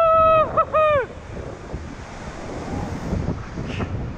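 Surf surging and washing over a rock ledge, with wind buffeting the microphone. Over the start, a man's long, high yell holds steady, breaks up and falls away about a second in.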